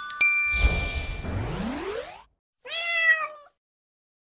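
Filmora (喵影工厂) logo sting sound effect: a few bright dings, then a whoosh with a rising sweep lasting about two seconds. After a short pause comes a single cat meow.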